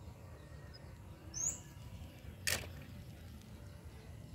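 Faint low background noise outdoors, with a single short high bird chirp about a second and a half in and one sharp click about a second later.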